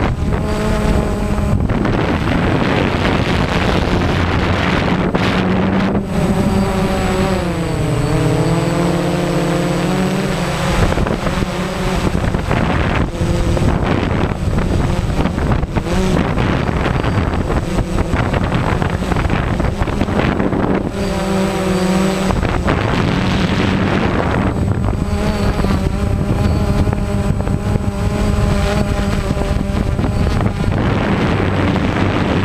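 DJI Phantom quadcopter's motors and propellers humming, picked up by the onboard GoPro, with several pitches that dip and rise again about eight seconds in as the motor speed changes. Wind buffets the microphone throughout.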